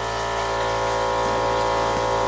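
A steady machine hum with several fixed pitched tones, like a small electric motor running continuously, holding the same pitch and level throughout.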